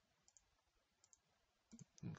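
Faint computer mouse button clicks: three clicks, each a quick pair of ticks as the button is pressed and released.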